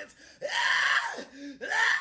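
A man's voice in two long, drawn-out wordless cries, loud and strained, the first beginning about half a second in and the second near the end.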